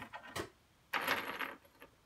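Loose metal screws clinking as a hand rummages through a pile of them on a wooden workbench: a few light clicks, then a louder jingling rattle about a second in.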